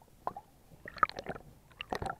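Water gurgling and bubbling around a submerged camera: irregular small pops and splashes, with a cluster about a second in and another near the end.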